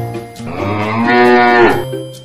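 A single long cow moo that rises in pitch, swells to its loudest a little past a second in, and ends shortly before the close. Light mallet-percussion music plays under it.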